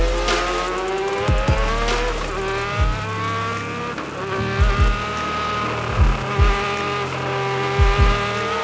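A Formula One car's engine heard from on board at speed: its note climbs steadily in pitch as the car accelerates, dips briefly a few times and climbs again. Several short low thumps come through along the way.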